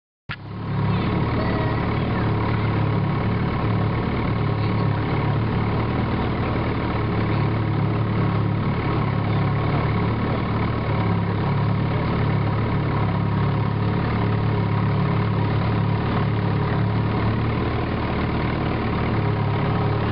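Antique outboard motor running steadily at low speed, with no revving. It cuts in just after the start.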